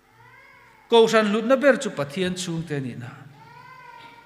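A man's voice over a public-address system, speaking loudly with a strongly rising and falling pitch. It sets in about a second in and trails off by about three seconds.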